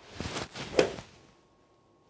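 Swish of a golf iron swung through the air in a practice swing with no ball struck, building up and peaking sharply just under a second in.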